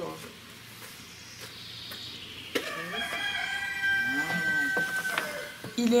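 A rooster crows once, starting about two and a half seconds in and lasting nearly three seconds, ending on a long drawn-out note. A few sharp knocks sound alongside it.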